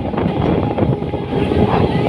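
Electric multiple unit (EMU) local train running, a steady rumble and rattle of wheels and carriages, heard from its open doorway as it passes along a station platform.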